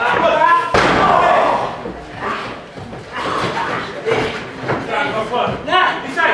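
A single heavy slam of a wrestler's body hitting the wrestling ring's canvas just under a second in, echoing in the hall, with people's voices before and after it.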